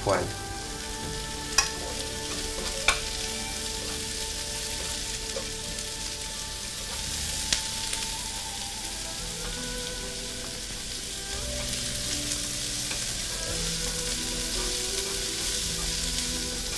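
Sliced vegetables and shrimp sizzling steadily in hot oil in a frying pan as they are stir-fried. A few sharp clicks come from the utensils striking the pan.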